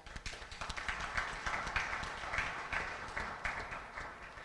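Audience applauding: many hands clapping at a steady level.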